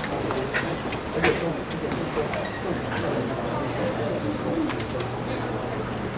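Room tone of a lecture hall: low murmuring voices over a steady hum, with a few sharp clicks and knocks, the loudest about a second in.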